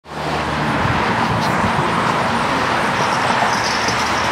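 Street traffic: a steady rush of car tyre and engine noise from the road.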